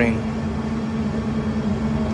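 Bus engine and road noise heard inside the passenger cabin: a steady drone with a low, even hum.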